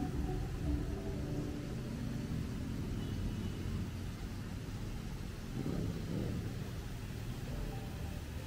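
City street traffic: a steady low rumble of vehicles, with one engine briefly rising and falling in pitch about six seconds in.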